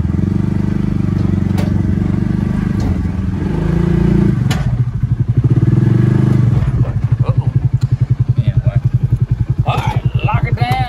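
Side-by-side UTV's small engine running. Its pitch rises briefly about four seconds in, then it settles into an even, fast throbbing idle for the last few seconds.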